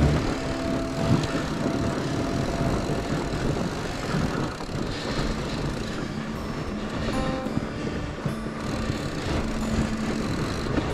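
2021 Giant Yukon 2 fat bike riding over a groomed snow trail: a steady rumbling rolling noise from the wide tyres and drivetrain, heard close up from a chest-mounted camera. Quiet background music runs under it.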